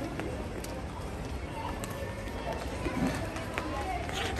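Footsteps and light taps of a child dribbling a football on a stone-tiled floor, over a low background murmur of voices.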